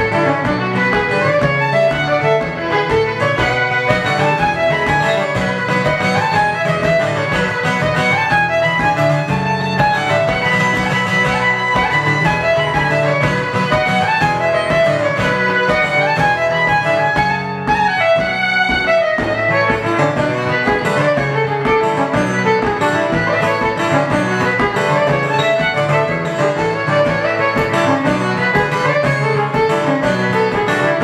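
Fiddle and acoustic guitar playing jigs live: the bowed fiddle carries a fast, busy melody over the guitar's strummed chords, which keep a steady rhythm.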